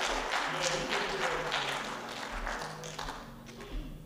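Congregation clapping and calling out at the close of a sermon, dying away about three seconds in, with low held keyboard notes underneath.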